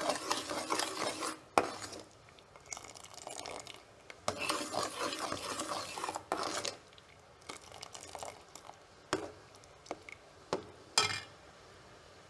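A spoon stirring melted jaggery syrup in a metal pan, scraping against the pan in two longer spells, with a few sharp clinks of metal on metal in the later part.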